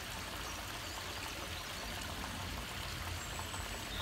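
Small garden pond waterfall splashing steadily into the pond.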